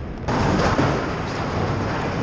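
Explosive demolition charges going off in a bridge implosion: a rumbling blast that swells about a quarter second in and carries on steadily.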